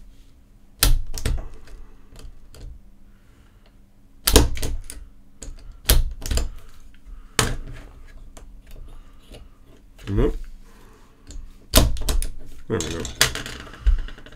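LSA punch-down tool snapping the wires into the terminals of a shielded CAT7 ethernet wall jack: a series of sharp clicks, several in quick pairs, with quieter wire handling between them.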